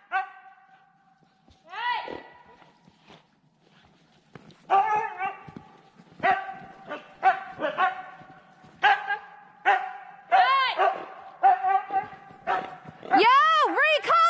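Huskies barking and yelping in short, high-pitched, excited calls. After a single call about two seconds in, the calls come in a fast series from about five seconds on and grow loudest near the end.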